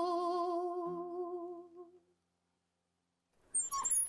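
A woman's singing voice holding a long final note with vibrato over a low acoustic guitar note, fading out over about two seconds into silence. Brief short sounds come in near the end.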